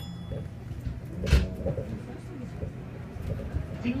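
Inside a running Tama Toshi Monorail car: a steady low running hum, with one sharp, loud knock about a second in and low murmuring voices.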